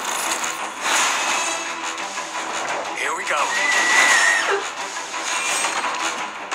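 Animated action-film trailer soundtrack: music with action sound effects, including a sweeping electronic effect about halfway through.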